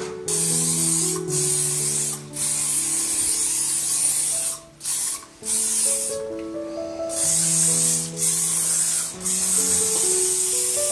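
Aerosol spray can hissing in a string of spurts, some about a second long and others several seconds, with short breaks between them, over background music.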